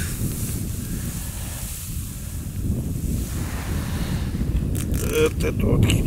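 Wind buffeting the microphone as a steady low rumble, with a brief man's voice near the end.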